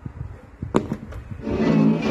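Toshiba RT-S77 boombox cassette deck: a few mechanical clicks as the play key goes down, then music from the cassette starts playing about one and a half seconds in.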